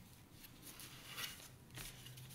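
Faint rustling and scraping of hands handling cardboard and acrylic pieces on newspaper, with a couple of brief scratchy rustles in the middle and near the end.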